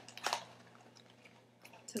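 A few short clicks and rustles near the start as small boxed miniature sets are handled, then only a faint steady hum.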